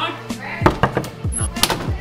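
Several sharp knocks on a closed interior door, coming irregularly and bunched near the end, over background music.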